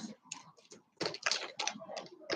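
Turquoise and shell bead necklace being lifted off a fabric display bust: irregular light clicks and rustles of the beads knocking together, busiest from about a second in.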